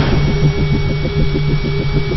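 Engine rumble sound effect with a steady, even throb of about eight pulses a second and a faint high steady tone over it.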